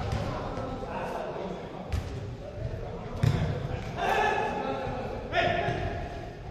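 Football kicked on an indoor artificial-turf pitch: two sharp thuds about two and three seconds in, echoing round the sports hall, the second louder. Players shout to each other through the rest of it.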